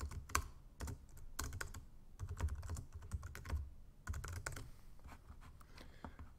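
Typing on a computer keyboard: a run of irregular key clicks, with a faint low hum underneath.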